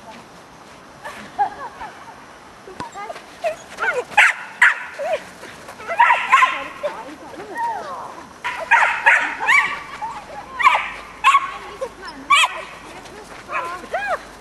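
A dog barking and yipping repeatedly in short bursts, more than a dozen barks over the stretch.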